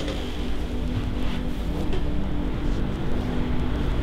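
Steady low rumble of room ventilation or air conditioning, with no sudden events.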